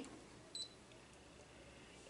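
A single short, high beep from the Brother ScanNCut SDX225's touch screen as its OK button is tapped with a stylus, against near-silent room tone.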